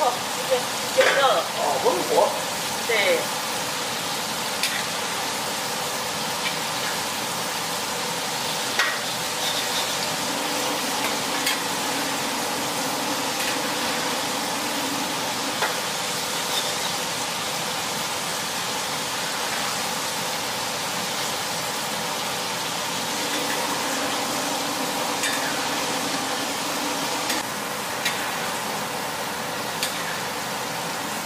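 Battered mushroom pieces deep-frying in a wok of hot oil: a steady sizzle and bubbling, with a metal spatula stirring and now and then clicking against the wok.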